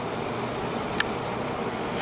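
Steady machinery hum with a rushing noise under it, and a single faint click about a second in.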